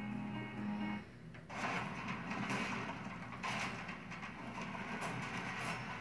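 Television commercial audio heard through the TV's speaker in the room. A sustained music chord ends about a second in. After a brief dip, a promo's soundtrack starts, noisy and rough with repeated sharp hits.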